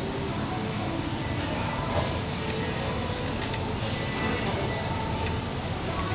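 Steady, even rumbling noise with a few faint short tones over it.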